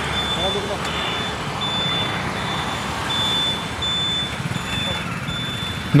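Hero Splendor Plus motorcycle's 97cc single-cylinder engine running as the bike rides along a road, with steady road noise. A thin high-pitched beep-like tone comes and goes throughout.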